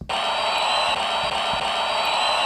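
Recorded crowd-cheering sample played through a Sony SRS-XB33 Bluetooth speaker: a steady wash of audience noise with a thin high tone held through it.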